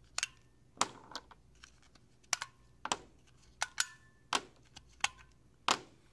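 Six AA batteries being pried one by one out of the plastic battery compartment of a LEGO Mindstorms EV3 brick and set down on a desk: about ten sharp, irregular clicks and clacks roughly half a second apart, a few with a brief ring.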